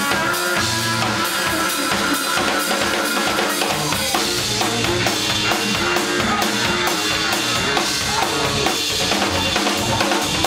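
Live band music in a club: a sousaphone plays a low, repeating bass line over a drum kit's steady beat, with another horn playing higher lines.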